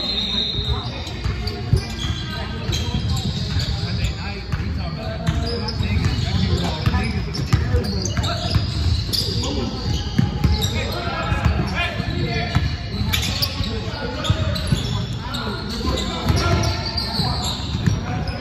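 A basketball dribbled on a hardwood gym floor in repeated bounces during play, with players' voices calling out. The sound echoes in a large gym.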